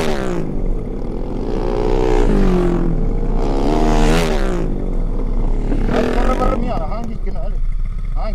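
Sport motorcycle engine revving in repeated rises and falls of pitch, about one every two seconds, with shorter, quicker blips near the end, over a steady low engine rumble.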